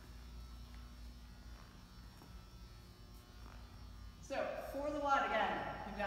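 Steady low electrical hum with a few faint footsteps on a rubber gym floor, then a woman starts talking about four seconds in.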